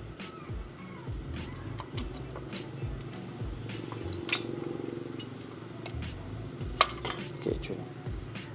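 Metal clinks and handling noise from a single-burner gas stove's valve and igniter housing being worked loose by hand, with two sharp clicks, one about halfway through and one near the end, over background music.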